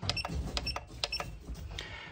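Buttons on a SkyRC T200 RC battery charger being pressed to step through its menu. Each press gives a click, and three of them come with a short high beep, about half a second apart.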